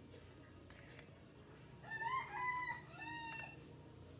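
A single drawn-out animal call, starting about two seconds in and lasting about a second and a half, rising at first and then held, in two parts with a short break.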